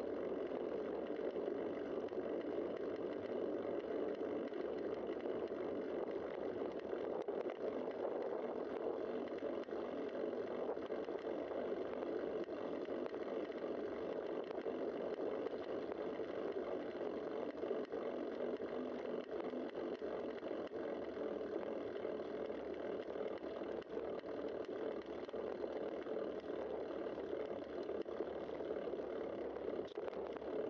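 Steady, even rush of wind and tyre noise picked up by a bicycle-mounted camera while riding on a paved road, with no breaks or distinct events.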